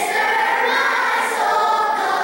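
Children's choir singing, holding steady sustained notes.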